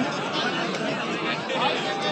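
Crowd of spectators chattering, many voices talking over one another at a steady level.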